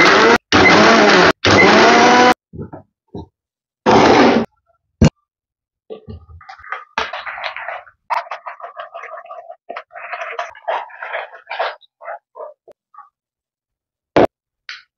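Electric blender pulsed in short bursts: three bursts in the first two seconds and one more about four seconds in, as it churns thick custard apple pulp with its seeds. Then, after a single sharp click, comes a stretch of irregular wet squelching and scraping as the thick pulp is pressed through a metal strainer with a spoon.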